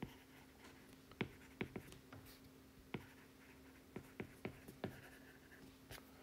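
Stylus tip tapping on a tablet's glass screen while handwriting: faint, sharp, irregular taps, about ten in all, over a steady low hum.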